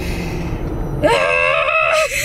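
A woman's high-pitched excited squeal, held for about a second, starting about halfway in, over a low steady rumble.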